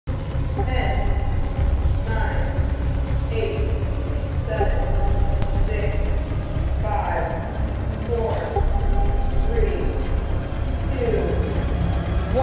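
Film soundtrack: a steady deep rumble under music, with short shouts and cries from a crowd of people breaking in every second or so.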